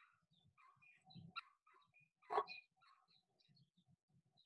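A dog making a few faint, short vocal sounds, the loudest a little past halfway, over faint bird chirps.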